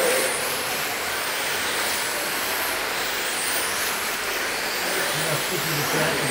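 1/10-scale electric RC sprint cars racing on an indoor dirt oval: a steady wash of motor and tyre noise with high-pitched electric motor whines rising and falling as the cars pass. Faint voices come in near the end.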